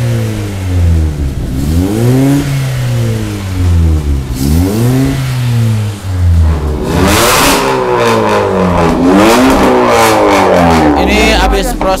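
Honda Brio's four-cylinder petrol engine being revved up and down over and over while parked, each rev climbing and falling back within a second or two. This is the throttle work of a catalytic-converter cleaning after a full tune-up. A loud rushing noise joins the revs about seven seconds in.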